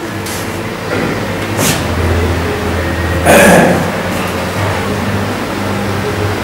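A low steady rumble, strongest in the middle. About three and a half seconds in, a person makes a short breathy vocal noise.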